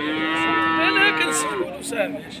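A cow moos once: one long call lasting about a second and a half, holding a nearly level pitch and wavering briefly around the middle.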